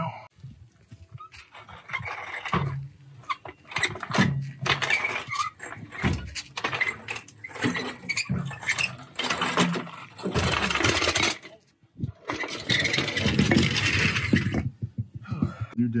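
Metal knocks, clanks and scraping from a car differential and the tools used on it as it is handled under the car, coming in irregular bursts, with two longer, denser stretches of scraping noise in the second half.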